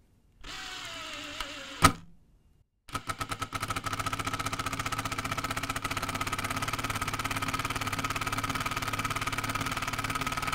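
DeWalt 12V Xtreme DCF801 brushless impact driver on its slowest mode driving a three-inch screw into wood. The motor spins with a slowly falling whine, gives a sharp click and pauses for about half a second, which the user thinks is the tool calibrating torque. From about three seconds in, the hammer mechanism impacts in a fast, steady rattle.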